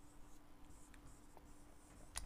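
A few faint strokes of a marker drawing lines on a whiteboard.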